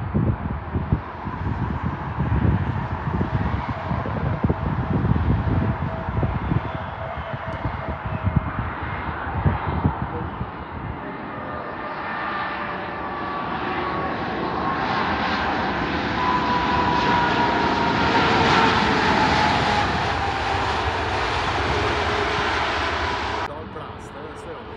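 Twin-engine jet airliner landing. Uneven low rumbling on approach gives way after touchdown to a swelling engine roar, with a whine that falls in pitch as the plane rolls past, loudest near the end before it cuts off suddenly.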